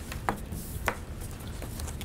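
Two sharp taps about half a second apart, over a steady low room hum, as papers and a pen are handled at a courtroom bench.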